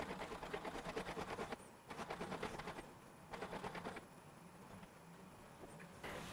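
Weilan BabyAlpha robot dog's leg motors running with fast, faint ticking as it walks itself onto its charging dock, in three short spells that stop about four seconds in as it settles down to charge.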